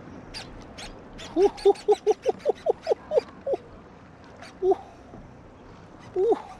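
A man laughing hard in a quick run of short bursts, about five a second, then a single shout of "woo" near the end.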